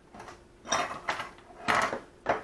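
Kitchen utensils being handled: a few short clattering, scraping noises, the loudest a little before the end.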